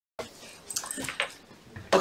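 A few faint, scattered knocks and rustles of a man's footsteps and clothing as he walks up to the board. A man's voice begins right at the end.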